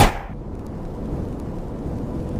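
Intro sound effect: a sudden hit at the very start, then a steady low rumble.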